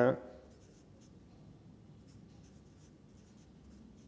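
Felt-tip marker writing on paper in a series of short, faint strokes.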